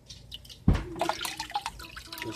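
Water dripping and splashing from a soaked filter sponge into the aquarium as it is lifted out of a hang-on-back filter, with a single low thump about two-thirds of a second in.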